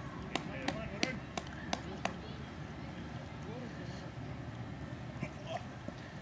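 Open-field ambience with faint, distant voices of cricket players. In the first two seconds there is a run of six sharp, evenly spaced clicks, about three a second.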